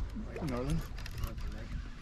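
Faint, indistinct human voice, with a low, uneven rumble of wind on the microphone underneath.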